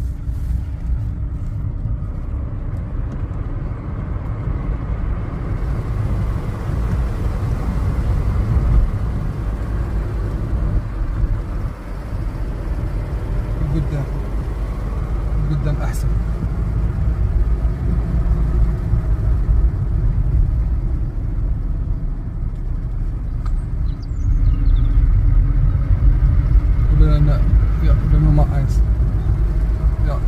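Car interior road noise: a steady low rumble of engine and tyres on a narrow asphalt road, heard from inside the cabin, getting a little louder near the end.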